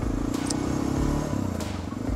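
Honda NX650 Dominator's single-cylinder four-stroke engine running steadily as the motorcycle rides along.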